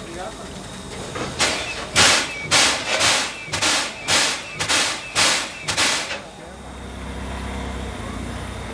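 C56 steam locomotive giving about nine sharp steam exhaust beats in an even rhythm, roughly two a second, that stop about six seconds in. A steady low rumble follows near the end.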